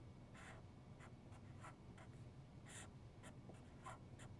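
Faint, short scratches of a felt-tip marker writing on a surface, about seven strokes at irregular intervals, as fraction bars and numbers are drawn.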